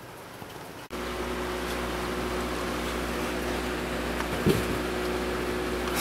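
Heavy rain pouring down, with a steady machine hum underneath. Both start abruptly about a second in, after a quiet first second.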